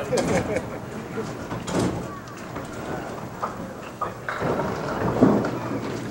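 Bowling alley background: a low murmur of voices over a dull rumble, with a few sharp knocks about two seconds in and again between four and five seconds.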